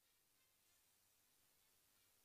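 Near silence: only faint hiss.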